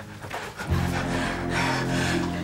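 Background score music: a sustained low chord comes in less than a second in and holds.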